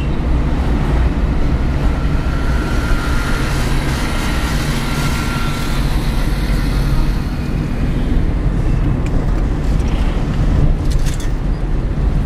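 Steady rumble of a moving car heard from inside the cabin: engine and tyre noise heavy in the low end, with the surrounding road traffic around it.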